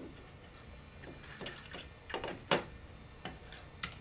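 Faint, scattered small clicks and taps of an Athearn N scale Southern Pacific bay window caboose being pushed by hand along model railroad track. The sharpest click comes about two and a half seconds in.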